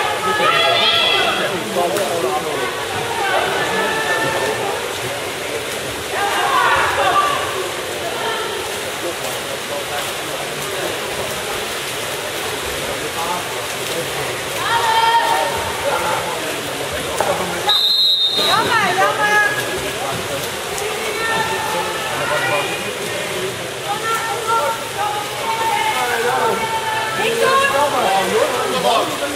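Water splashing and churning as water polo players swim and wrestle for the ball, with voices shouting throughout. A short, high whistle blast comes about two-thirds of the way in.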